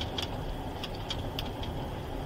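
Car cabin noise inside a police patrol car: a steady low engine and road rumble, with a few faint clicks.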